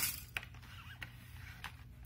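A few faint, sharp plastic clicks as the window fan's folding accordion side panel is handled and fitted back into place, over a faint steady low hum.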